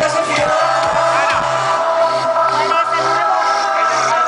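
Live synth-pop music from a band on stage: a held synthesizer chord over a steady beat, with a brief vocal line about a second in.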